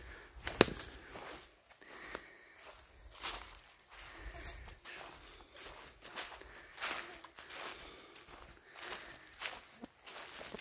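Footsteps of a hiker walking on a forest trail, about one step a second, with one sharp tap about half a second in that is louder than the rest.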